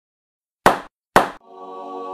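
Logo intro sting: two sharp hits about half a second apart, followed by a held musical chord that swells in.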